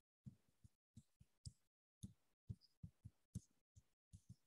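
Near silence broken by about eleven faint, short, irregular taps of a stylus on a pen tablet during handwriting.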